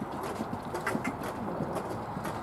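Hoofbeats of a horse cantering on grass turf: a run of soft, uneven thuds, several a second.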